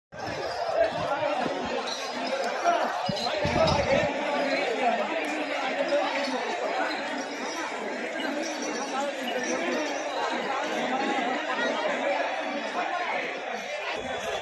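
Several men talking and calling out at once, overlapping chatter with no single voice standing out.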